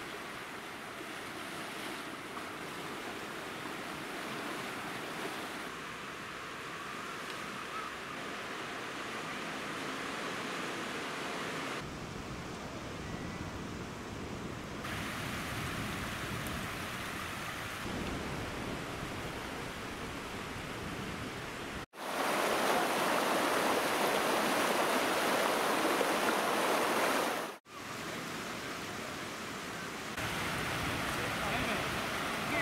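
Sea waves washing onto the shore as a steady rushing noise, changing abruptly at each cut. About three-quarters of the way through comes a louder stretch of surf noise, bounded by two brief dropouts.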